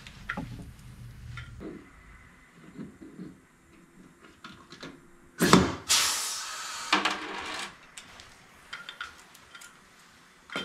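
Pneumatic rivet squeezer setting a rivet: one loud clunk about halfway through, followed by about a second of air hissing, with light clicks of handling the tool and parts before it.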